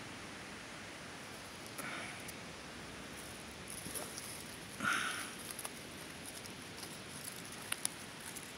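Quiet outdoor hiss with faint rustling and handling noise, two soft breaths about two and five seconds in, and a few light clicks near the end.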